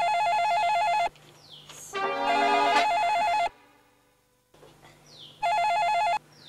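Electronic telephone ringer warbling rapidly between two pitches, in bursts of about a second: one at the start, another about three seconds in, and a third near the end.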